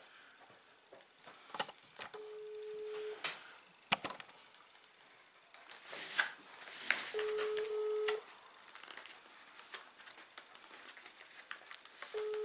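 A phone's ringback tone heard through the handset's loudspeaker while the call rings out: a steady mid-pitched beep about a second long, repeating every five seconds in the German pattern. It sounds twice, and a third beep starts at the very end. A single sharp click comes a little after the first beep, with light handling noise around it.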